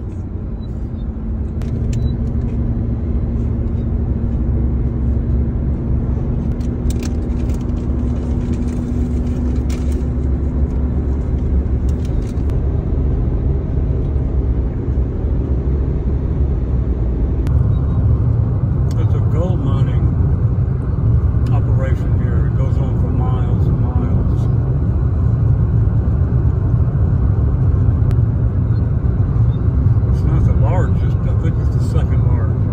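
Steady low rumble of road and engine noise inside a car's cabin while driving at highway speed.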